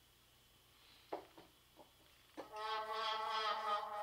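A vocal sound from the Output Exhale plugin's 'Bangers' preset: a few short clipped notes about a second in, then a held note with a steady, buzzy stack of harmonics from a little past halfway.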